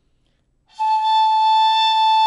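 Shinobue, a Japanese bamboo transverse flute, playing one long steady high note that begins just under a second in. It is the '0' note of shinobue notation, fingered with the finger just held down.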